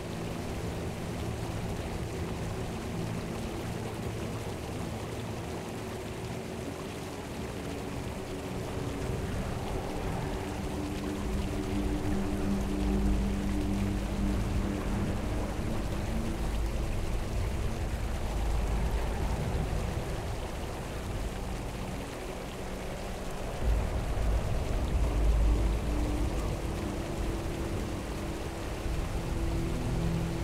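Calm music of sustained low notes over the steady rush of a flowing mountain stream. Deep bass swells come in about a third of the way through and again later on.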